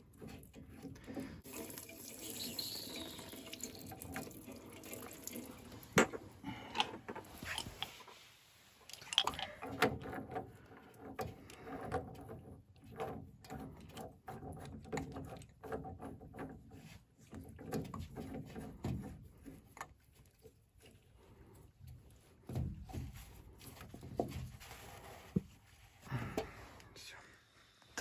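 Small brass automatic air vent being unscrewed by hand from a heating mixing unit: scattered light metallic clicks and scrapes of the threads and fingers on the fitting, with one sharper click about six seconds in. Water drips and trickles as the old, leaking vent comes off.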